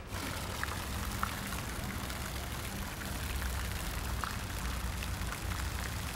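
Pool fountain jets splashing into the water, an even rushing hiss, over a low steady hum.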